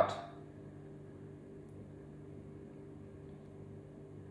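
Faint steady low electrical hum made of several even, unchanging tones, with nothing else happening.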